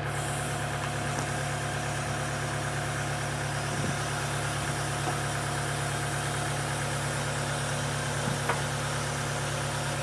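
Terex PT110F compact track loader's diesel engine running steadily as the lift arms lower the mulcher head, with a couple of small knocks about four seconds in and near the end.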